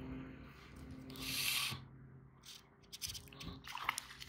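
Water splashing as a hooked snook thrashes at the surface, the splashing strongest in the last second, over a steady low hum.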